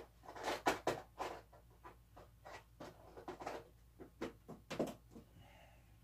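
Light clicks, taps and rustles of hands rummaging in a small clear plastic parts case, picking out a spare O-ring. The clicks come in scattered clusters with short quiet gaps.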